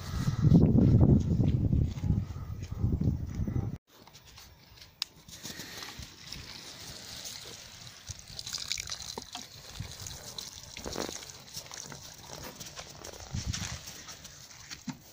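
Low rumbling handling noise for the first few seconds, which cuts off abruptly; then water from a plastic watering can's rose sprinkling onto soil-filled pots, a soft steady hissing patter on soil and leaves.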